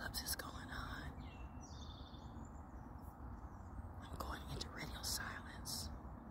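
A woman whispering softly in two short spells, one at the start and a longer one after about four seconds, over steady low outdoor background noise.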